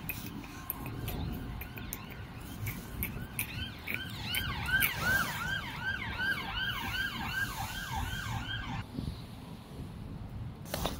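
Siren sounding in a fast yelp, about three quick rising-and-falling whoops a second, starting a few seconds in and cutting off near the end, over a low steady rumble.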